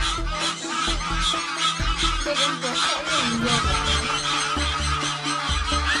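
Egyptian geese honking rapidly and repeatedly while mobbing an attacker, over background music.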